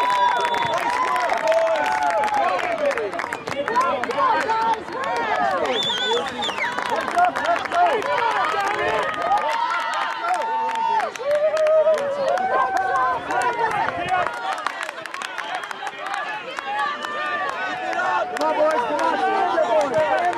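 Sideline spectators at a youth soccer match talking and calling out over one another, a steady babble of many voices just after a goal.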